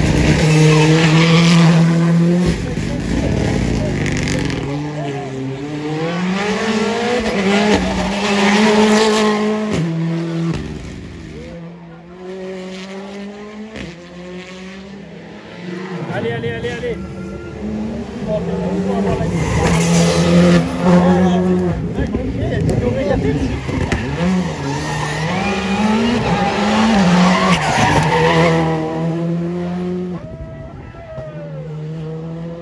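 Rally car engine revving hard through a hairpin, its pitch rising and falling with throttle and gear changes. The engine sound drops away for a few seconds around the middle, then comes back loud.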